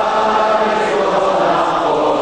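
Many voices singing together on long held notes, like a choir or a chanting crowd.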